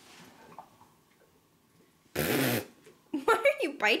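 One short, raspy dog play growl, about half a second long, a little past halfway through.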